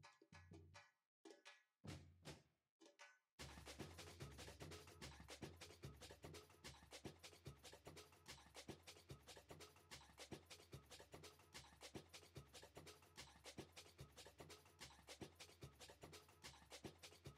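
Very faint background music with a quick, even percussive beat that settles in about three seconds in.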